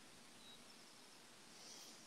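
Near silence: a deliberate pause in the talk, with only a faint steady hiss of background noise.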